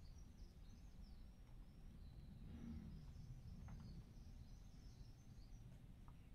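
Near silence, with faint, scattered bird chirps high in the background over a low room-tone rumble.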